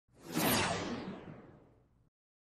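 Whoosh sound effect for an on-screen transition: a rush of noise that swells in quickly, then falls in pitch as it fades away over about a second and a half.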